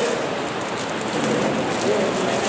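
A steady, even hiss of noise with faint voices underneath.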